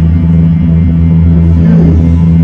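Worship band music heard up close at the bass cabinet, led by an electric bass guitar played through an effects pedalboard holding sustained low notes, with softer instruments above it.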